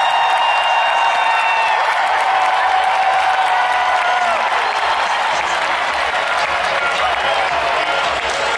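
Large stadium crowd cheering and applauding, with a few held high cheers standing out above the noise in the first couple of seconds.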